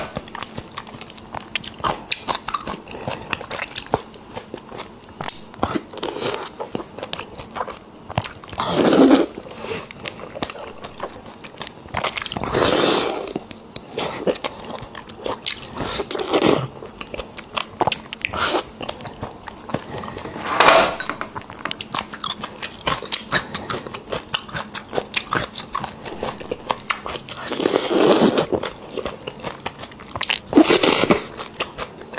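Close-miked wet chewing and lip-smacking of soft, fatty spicy beef bone marrow, with dense small mouth clicks throughout and a few louder mouthfuls every several seconds.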